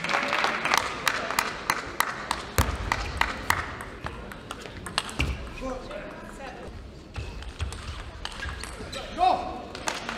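Table tennis ball clicking sharply again and again against the table and paddles, with a burst of applause and crowd noise in the first couple of seconds. A brief voice cry comes about nine seconds in.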